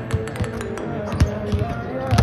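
Basketballs bouncing on a hardwood court, a few separate thuds, over steady background music.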